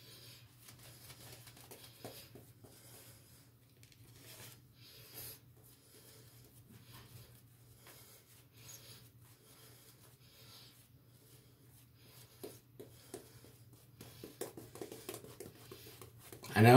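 Very quiet: faint soft crackling and rustling of a shaving brush working lather on the face, growing busier in the last few seconds, over a low steady hum.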